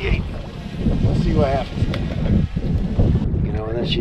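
Wind buffeting the microphone over open water, a loud, steady rumble, with a couple of short wavering voice-like sounds, one in the middle and one near the end.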